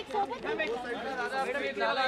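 Several people talking at once: the chatter of a crowd of voices, none standing out clearly.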